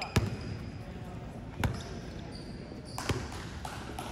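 Basketball bounced on the court floor three times, about a second and a half apart: a shooter's dribbles at the free-throw line before the shot.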